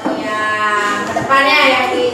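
Drawn-out voices holding long, wavering notes, louder from a little past halfway.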